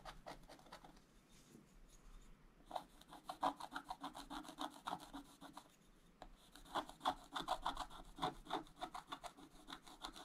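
Wooden stylus scratching the black coating off a scratch-art page in quick back-and-forth strokes. The scratching is light at first and comes in two busy spells, from about three seconds in and again from about six and a half seconds until shortly before the end.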